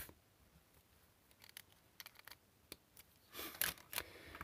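Mostly quiet, with a few faint ticks and then a short scratchy rustle near the end, from a felt-tip marker writing on a spiral notepad page and the hand moving over the paper.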